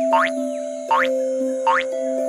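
Three rising cartoon 'boing' spring sound effects for a rabbit's hops, a little under a second apart, over background music with steady held notes.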